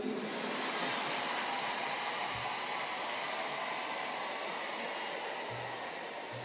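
A large audience applauding steadily, slowly dying down toward the end.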